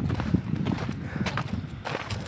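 Footsteps on a dirt-and-gravel path: an irregular run of short crunching knocks at a walking pace.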